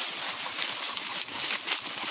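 Dry fallen leaves rustling and crackling as two dogs wrestle and scramble on them: a dense, steady run of small crackles.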